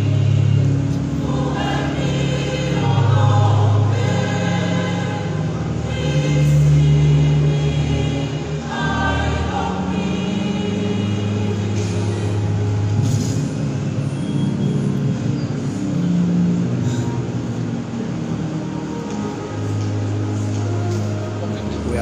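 A church choir singing a hymn in long, held notes, with a steady low accompaniment beneath.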